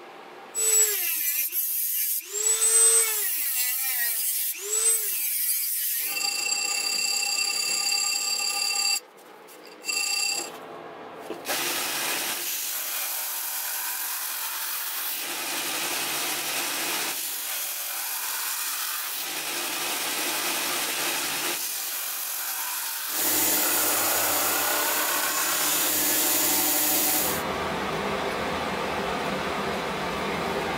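Shop power tools working steel. First a drill motor rises and falls in pitch three times. Then comes a steady whine, and then a belt grinder grinds a steel knife blade, cut from a car leaf spring, in repeated passes that get louder toward the end.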